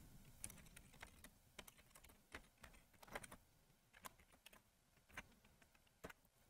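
Faint, irregular typing on a computer keyboard: a dozen or so scattered keystrokes.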